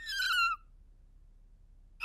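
A short high squeak lasting about half a second, falling slightly in pitch: a cartoon rabbit's voice giving out as he tries to speak after losing it.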